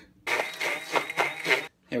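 Graham crackers being crushed: a loud stretch of crunching and crackling that stops short about a second and a half later.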